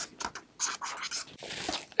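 Marker pen writing on a whiteboard: a quick run of short, irregular scratchy strokes as a word is written out.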